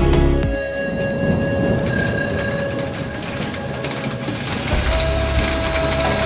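Background music with a beat cuts out about half a second in, giving way to a steady hiss of rain with a low rumble of thunder that swells again near the end, under a few faint held tones.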